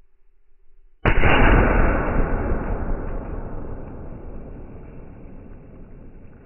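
A single .45-70 lever-action rifle shot about a second in, slowed down: a sudden deep boom that rumbles and dies away over several seconds.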